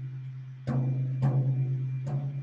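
A floor tom is tapped with a drumstick near a tension rod, about two-thirds of a second in and more lightly half a second later. Its head rings on a low, sustained tone. This is tap-tuning: the pitch at each lug is checked so the head can be brought to an even tension all round.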